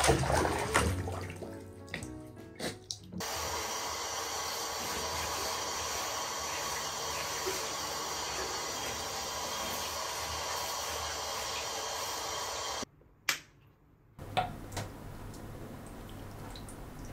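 Water splashing as a dog wades and paddles in bathwater, then a handheld shower head spraying steadily onto a German Shepherd's wet coat for about ten seconds before it cuts off suddenly. Afterwards water drips from the soaked fur.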